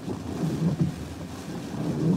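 Tropical-storm wind buffeting a car and driving rain, heard from inside the closed cabin as an uneven low rumble.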